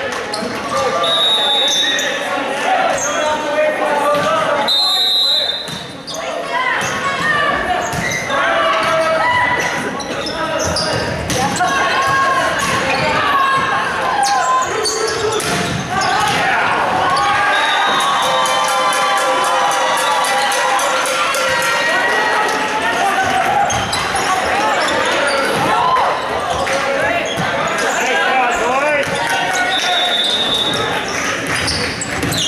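Volleyball match sounds in a large gym: many players' and spectators' voices calling and shouting over one another, with repeated thuds of the ball being struck. A few short, shrill high-pitched squeaks come through, about a second in, around five seconds in and again at the end.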